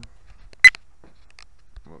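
A single short, sharp, high-pitched click with a beep-like ring, about two-thirds of a second in, much louder than the speech around it.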